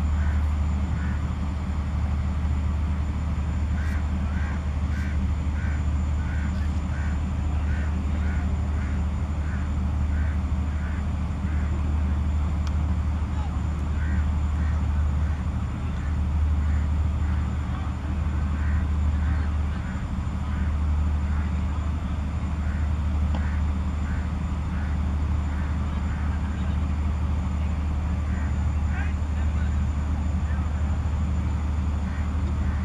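A steady low rumble under faint distant voices, with short high calls repeating in quick runs.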